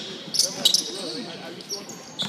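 Indoor basketball game: a few sharp hits of the ball and shoes on the hardwood gym floor about half a second in, with players' voices in the large, echoing hall.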